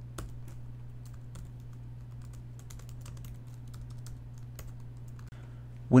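Computer keyboard typing: irregular key clicks over a low steady hum.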